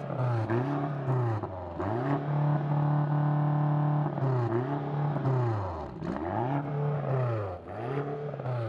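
BMW XM's twin-turbo V8 revved while parked: a series of throttle blips, each rising and falling in pitch, with one rev held high for about two seconds in the middle, heard from behind at the quad exhaust tips.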